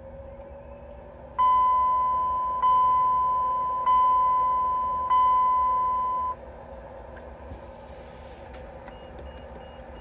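A 2008–2010 Dodge Journey instrument cluster's warning chime sounding as the cluster powers up: four ringing dings about a second and a quarter apart, each fading before the next, then stopping. A faint steady whine, rising slightly in pitch at first, runs underneath.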